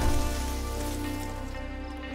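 Suspenseful cartoon background score: a sustained low chord slowly fading, with a hissing wash at the start that dies away.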